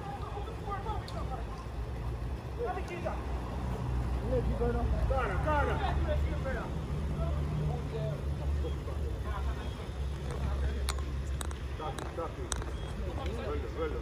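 Footballers' voices calling out across the pitch during play, over a steady low rumble. A few sharp clicks come near the end.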